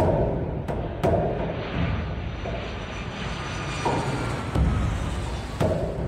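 Film background score: a low, rumbling drone broken by sudden deep drum hits at irregular intervals, several of them close together about a second in.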